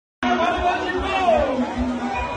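Voices chattering, more than one person talking.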